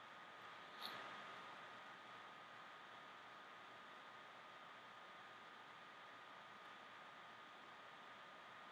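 Near silence: steady faint room hiss with a thin steady hum, and one faint click a little under a second in.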